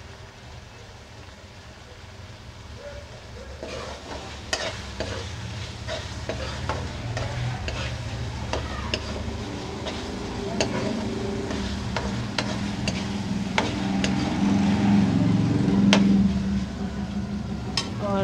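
Metal slotted spoon scraping and clinking against a wok as keema is stirred and fried in oil, sizzling. The scraping starts a few seconds in and the sound gets louder, over a steady low hum.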